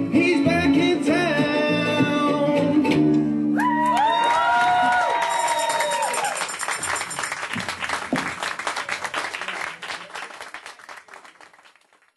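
Ukulele band strumming and singing the last bars of a jazz song, ending on a held sung final note, followed by audience applause and cheering that fades out near the end.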